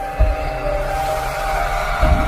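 Cinematic intro music: sustained synthesizer notes over a deep low rumble, with a low boom just after the start and a swelling whoosh building toward the end.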